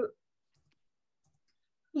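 Near silence: a pause in a young speaker's talk over a video call, with the tail of one word at the very start and the next sentence starting right at the end.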